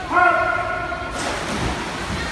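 A voice calls out once in a long held shout. About a second in, it is followed by a loud splash as a person plunges into the pool.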